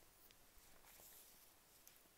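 Near silence, with a faint rustle of cotton fabric in a wooden embroidery hoop being handled in the middle, and a soft tick near the end.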